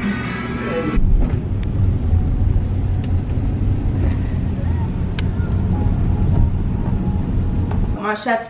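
Background guitar music for about the first second, then the steady low rumble of road and engine noise inside a moving car's cabin, with a few faint clicks.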